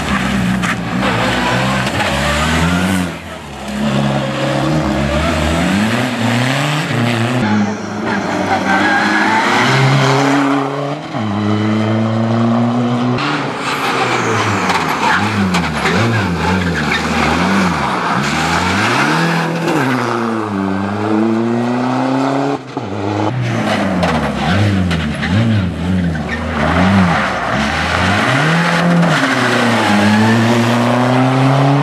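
Škoda Fabia turbodiesel rally car's engine driven hard on the stage, its pitch climbing and falling over and over with gear changes and lifts as the car accelerates, brakes and passes by.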